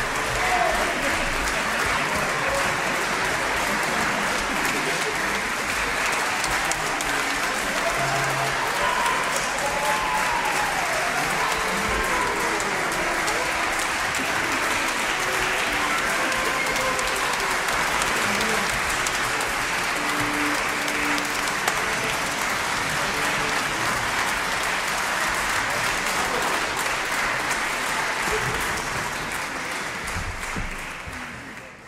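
An audience applauding: a dense, steady clapping that holds at an even level and begins to die away near the end.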